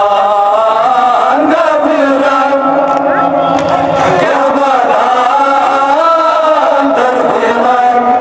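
Men chanting a Kashmiri noha, a Muharram lament, together into microphones: long held lines that bend in pitch between phrases.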